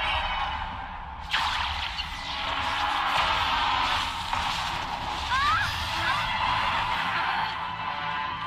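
Soundtrack of an animated series: background score with a sudden noisy sound effect swelling in about a second in and running on under the music.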